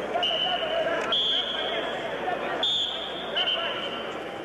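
Referee's whistle blown in a few steady, shrill blasts, each a little different in pitch, over the murmur of an arena crowd. It signals the wrestlers to restart the bout in the standing position.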